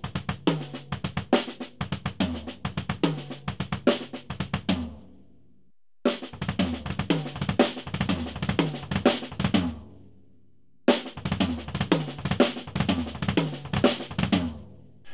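Drum kit with double bass drums playing a repeating six-note sextuplet lick: right hand, left hand, left hand, then three bass drum strokes, the right hand moving around snare drum, floor tom and small tom. It is played in three runs broken by two short pauses, first a little slower and then up to tempo.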